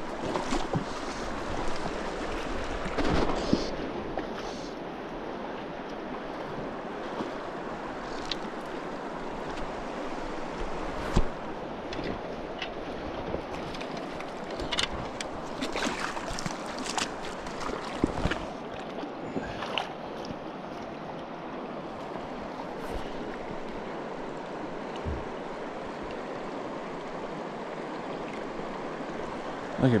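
Shallow mountain river rushing steadily over rocks, with a few short sharp knocks near the middle.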